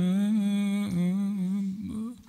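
A man's voice chanting an Arabic mourning elegy in long, slightly wavering held notes, with a short break about a second in, fading out near the end.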